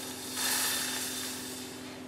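Water poured from a plastic jug into a saucepan of warm peanut butter: a steady splashing hiss that swells about half a second in and slowly fades.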